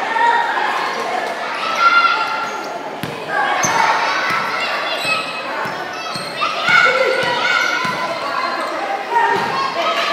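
Basketball being dribbled on an indoor hardwood-style court, a series of separate bounces echoing in a large hall, with voices carrying on over them.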